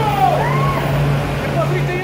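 Idling coach bus engine giving a steady low hum, with people's voices chattering over it.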